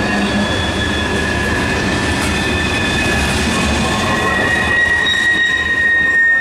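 Freight train hopper cars rolling past close by: a steady rumble of steel wheels on rail with a continuous high-pitched squeal from the wheels on the curving track. The squeal grows stronger near the end.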